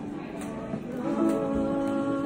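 A woman singing with harp accompaniment: her voice holds notes over plucked harp strings.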